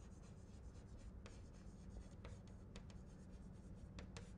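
Chalk writing on a blackboard: faint, irregular scratches and taps of the chalk as words are written.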